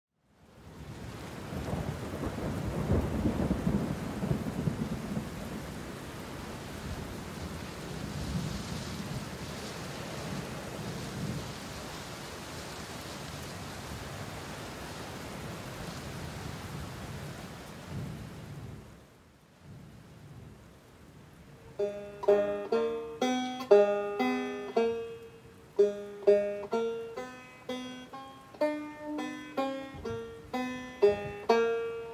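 Steady rain with rolling thunder. The heaviest rumbles come a few seconds in and again around ten seconds. After a short lull, a banjo starts picking a tune about 22 seconds in.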